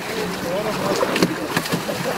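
Several people talking indistinctly over the steady rush of shallow river water, with a couple of short sharp clicks a little over a second in.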